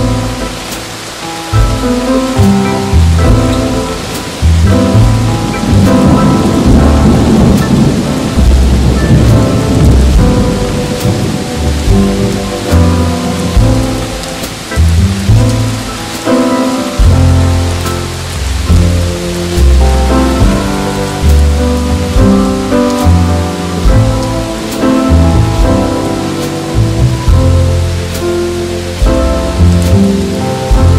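Steady rain layered over slow jazz with a low bass line, and a roll of thunder that swells and fades about a quarter of the way in.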